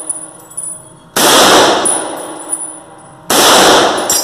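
Two rifle shots from an M1 Garand, about two seconds apart, each echoing off the walls of an indoor range and trailing a long decay. A faint high metallic ringing follows each shot.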